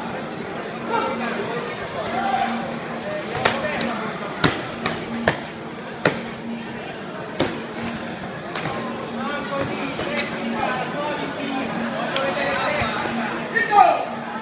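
Sharp cracks of escrima fighting sticks striking in a bout, scattered singly and in quick pairs, heard over the steady chatter of voices in a large hall. A loud shout rises near the end.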